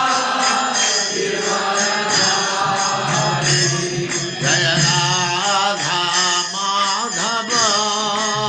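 Devotional mantra chanting sung over music. The voice wavers and glides in pitch, most clearly in the second half.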